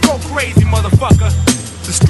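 Hip hop track: a beat with heavy bass and drum hits, with a vocal line over it.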